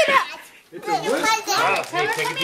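Young children's voices chattering and calling out, mixed with lower adult voices, with a brief lull about half a second in.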